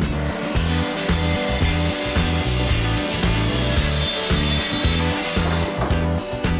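Makita plunge-cut circular saw running along a guide rail, cutting through a chipboard panel in one steady pass that starts just after the beginning and stops near the end. Background music with a steady bass beat plays underneath.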